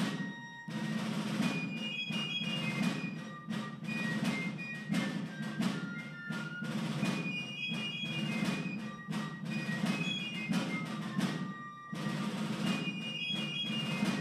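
Military ceremonial march played by drums with short high melody notes over them, accompanying the presentation of the colors.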